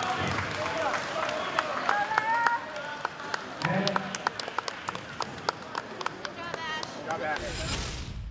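Scattered hand-clapping from spectators amid background voices, with a loud whoosh near the end.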